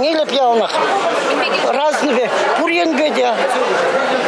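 A woman speaking, with crowd chatter behind her.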